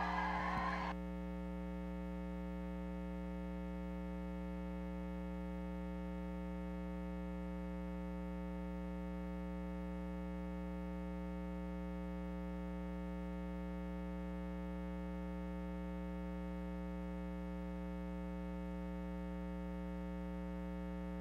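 Steady electrical mains hum, a buzz made of many evenly spaced overtones that holds unchanged. A faint noise under it in the first second stops suddenly.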